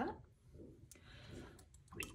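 A few faint, sharp clicks and light taps, one about a second in and several close together near the end.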